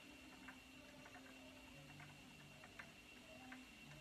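Near silence: faint room tone with a low steady hum and scattered light ticks.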